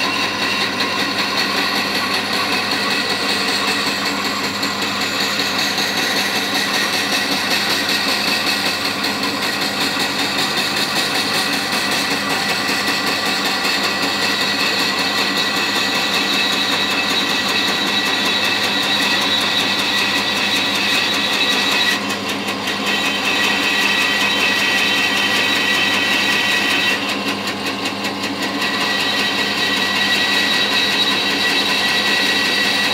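Bandsaw running steadily with a whine while a piece of buffalo horn is fed slowly through the blade. The higher part of the sound eases briefly twice, about two-thirds of the way in and again near the end.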